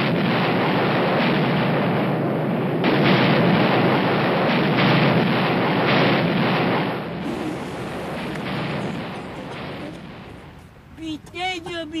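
Loud, continuous rumble of a high-rise building demolition: the explosive blast and the collapse of the structure. It grows louder about three seconds in, then fades away over the last few seconds.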